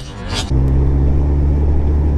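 Music cuts off about half a second in, giving way to the steady low hum of a second-generation Suzuki Hayabusa's inline-four engine with a Yoshimura R-77 exhaust, running evenly at low revs.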